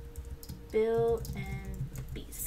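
Soft typing on a computer keyboard. About a second in, a short pitched tone sounds, the loudest thing here, and a fainter tone at another pitch follows it.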